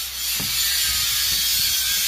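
Predator portable generator running steadily, its noise sitting mostly in the high end over a low hum, with a short knock about half a second in.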